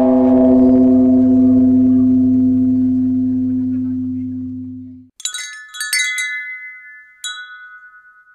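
A deep, bell-like ringing tone fades slowly and cuts off abruptly about five seconds in. Then wind chimes are struck in a few quick clusters, their high tones ringing out and dying away near the end.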